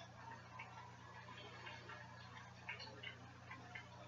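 Faint running of an aquarium hang-on-back filter: a steady low hum with scattered light ticks and clicks.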